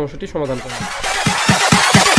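A man's voice for the first part of a second, then a rising whoosh with quickening bass thumps building into electronic intro music.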